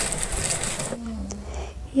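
Soft handling noises of fresh chillies and shallots being moved around in a stone cobek (mortar), with faint light ticks, and a brief low hum of a voice about a second in.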